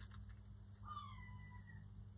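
A faint single animal call, about a second long, falling slightly in pitch, over quiet room tone.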